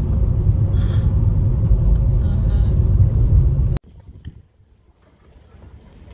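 Steady low rumble of road and engine noise heard inside a moving car's cabin on a paved road. It cuts off abruptly about four seconds in and gives way to quiet outdoor ambience.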